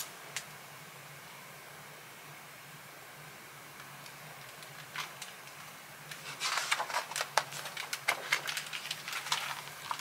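A picture book's paper pages rustling and clicking as they are handled and one page is turned, a run of short crackles from about six seconds in. Before that, quiet room tone with a faint low hum.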